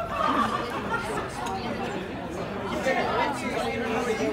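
Background chatter: several people talking at once, no single voice standing out.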